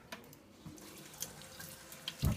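Kitchen tap running faintly into a stainless-steel sink, with a few light clicks as things are handled in the sink.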